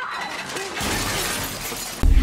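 Glass display shelves and ornaments shattering in a film fight: a dense crash of breaking glass and falling shards that swells about a second in and cuts off abruptly.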